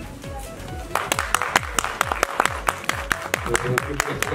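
Scattered hand clapping from a small audience, starting about a second in as a quick run of sharp claps, over background music.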